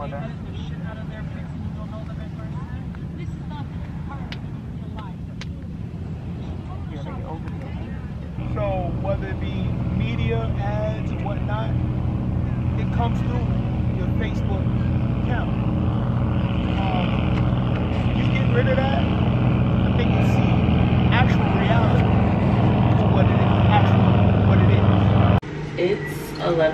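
People's voices in the background over a steady low drone that grows louder about eight seconds in.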